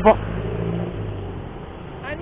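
A motor vehicle engine running with a steady low hum that fades about a second and a half in.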